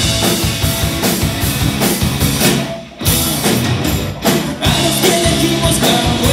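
Live rock band playing: electric guitars, bass guitar and drum kit, with a brief break about halfway through before the full band comes back in.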